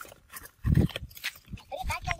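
Men's voices outdoors, mixed with irregular knocks and low thumps, the loudest about two-thirds of a second in. The knocks come from the workers walking with a barbed-wire roll turning on a wooden pole as the wire is paid out.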